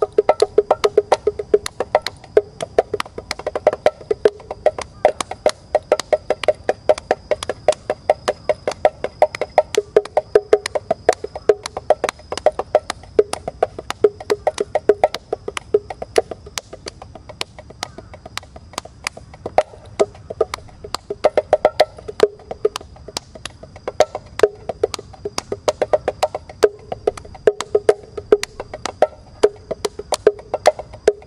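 Mini bongos played by hand in a quick, continuous run of strokes, several a second, the two drums' pitches alternating with a ringing tone.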